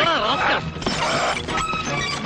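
Film soundtrack: a crash like something breaking, about half a second in, following a wavering pitched sound, with music underneath.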